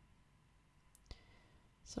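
Near silence: room tone with two faint clicks close together about a second in.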